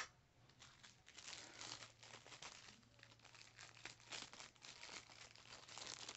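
Faint crinkling and rustling of packaging being handled, a steady stream of small irregular crackles.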